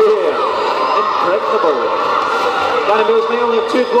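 Commentary by the roller derby announcers, with no other sound standing out.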